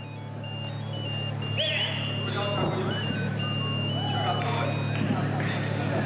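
Live rock band's stage sound between songs: a steady amplifier hum, high whistles and voices from the crowd, and two brief crashes, the first about two seconds in and the second near the end.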